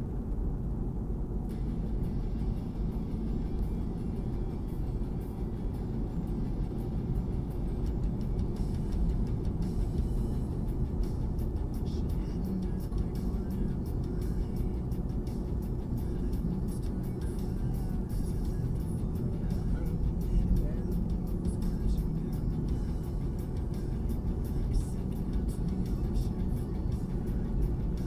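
Steady road and engine noise inside a moving car's cabin, picked up by the dashcam's microphone while driving at an even pace.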